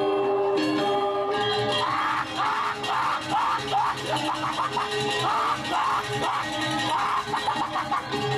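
Balinese gong kebyar gamelan played by a children's ensemble: held, ringing metallophone tones at first, then from about two seconds in a fast, jangling run of noisy strokes joins over the ensemble.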